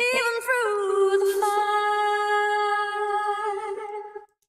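Recorded female lead vocal: a few quick ornamental turns, then one long, very steady held note with a slight wobble near the end. The reactor takes its unnaturally flat pitch for a clear sign of pitch correction (auto-tune).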